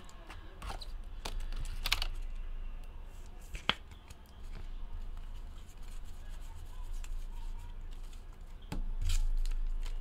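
Sports trading cards being handled and shuffled through by hand: scattered light clicks and taps of card stock, with one sharper click about three and a half seconds in, over a steady low hum.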